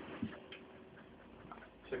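A few faint, scattered ticks and a soft knock from dogs moving about as they play and scuffle.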